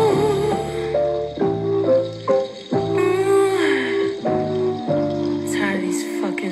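An unreleased song recording playing back: held keyboard chords that change every second or so, with a sung vocal line that glides down in pitch around the middle.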